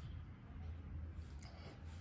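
Faint scratch of a pen on paper as a number is struck out, about one and a half seconds in, over a low steady hum.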